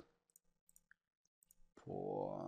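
Near silence broken by a few faint, short clicks; a spoken word starts near the end.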